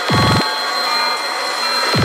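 Dark psytrance (darkpsy) electronic music at 176 BPM, here without a steady kick: a dense synth texture with a steady high ringing tone, and a deep falling-pitch synth sweep at the start and again near the end.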